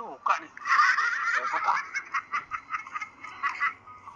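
High-pitched laughter: a dense burst of laughing about a second in that breaks into a quick run of ha-ha pulses, several a second.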